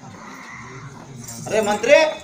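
A performer's voice: after a quiet first second, a loud, high, wavering vocal cry comes in near the end.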